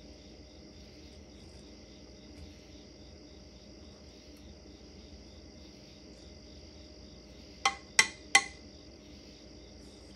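Three sharp knocks in quick succession near the end, a cup striking a stoneware crock as chopped cabbage is shaken out into it. They sit over a steady, faint high trill in the background.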